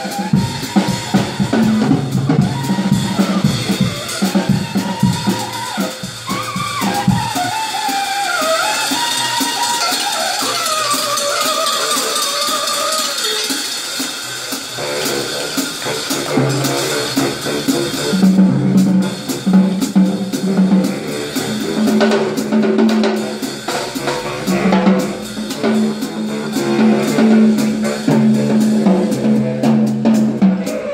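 Live drum kit and saxophone duo: the drums keep a steady groove with snare and bass drum, while the saxophone plays a wavering, bending melody through the middle. In the second half a low repeated riff runs under the drums.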